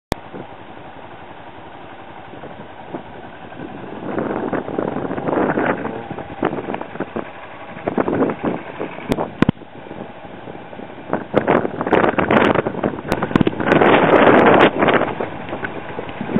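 Wind buffeting a camcorder's microphone outdoors, a steady rumble that swells into irregular loud gusts, with a few sharp clicks.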